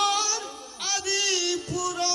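A man singing a Bengali Baul folk song into a microphone over instrumental accompaniment. He sings short phrases of long, wavering held notes.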